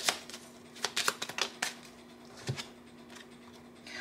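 A deck of oracle cards being shuffled by hand: a quick run of crisp card flicks and snaps over the first second and a half, then a single soft thump about two and a half seconds in as the deck is handled on the table.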